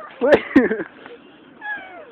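A person's short, high-pitched startled cries, "What? Ah!", with two sharp clicks among them; a faint short cry follows near the end.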